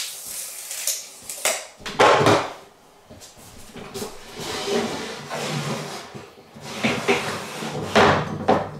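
Wooden skirting boards handled on a work table: scattered knocks and wood rubbing on wood as a board is shifted and an offcut is set against it, with a louder clatter about two seconds in.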